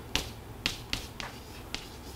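Chalk tapping and clicking against a chalkboard during writing: a few sharp, separate taps.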